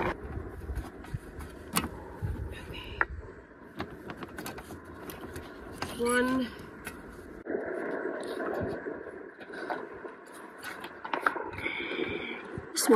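Scattered light clicks and scrapes of plastic solar panel cable connectors and a screwdriver being handled, over a low rumble of wind on the microphone.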